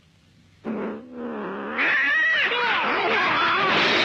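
A short, lower wail about a second in, then loud, overlapping high-pitched yowling and screeching from about two seconds in: caterwauling like fighting cats.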